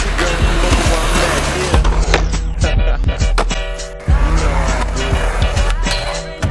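Skateboard wheels rolling on concrete, with several sharp clacks of the board, over background music.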